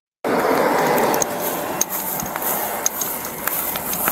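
Rustling handling noise with scattered small sharp clicks from a plastic lighter and a cardboard cigarette pack being handled, heard through a body-worn camera's microphone.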